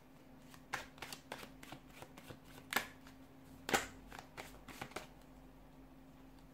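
A tarot deck being shuffled by hand: a run of soft, irregular card slaps and flicks, with a few louder snaps around the middle.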